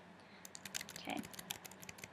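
Faint run of quick, sharp clicks, about a dozen, starting about half a second in, of the kind made by keys being tapped.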